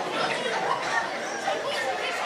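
Many people talking at once: the steady chatter of an audience, with no single voice standing out.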